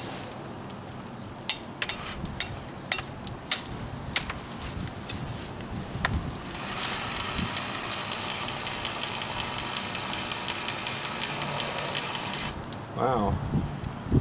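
A series of sharp clicks and knocks, then a hammer drill's motor running steadily for about six seconds without drilling before it cuts off.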